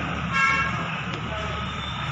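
A short horn toot, about half a second long and the loudest sound here, over a steady low background hum.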